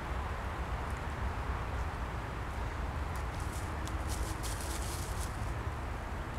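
Dry fallen leaves rustling and crackling as a dog shifts its paws, with a run of faint crackles about three to five seconds in, over a steady low background rumble.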